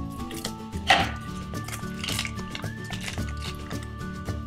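Background music, with a sharp crinkling snip about a second in as scissors cut through a trading-card pack wrapper. A shorter rustle of the wrapper and cards follows about two seconds in.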